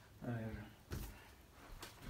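A man says a short word, then a single sharp knock about a second in and a fainter tap near the end.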